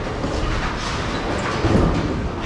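Bowling-alley din: bowling balls rumbling steadily down the lanes, with a heavier thud near the end.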